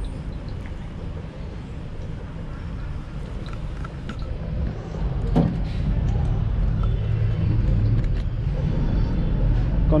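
A low, steady rumble that grows louder about halfway through, with one short knock about five seconds in.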